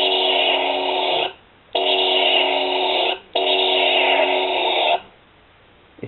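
Homemade toy blaster's built-in speaker playing its electronic firing sound effect three times, each burst about a second and a half long: a steady buzzing tone with hiss over it, cutting off sharply each time.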